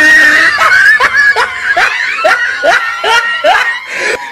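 High-pitched laughter in a quick run of short rising whoops, about three a second.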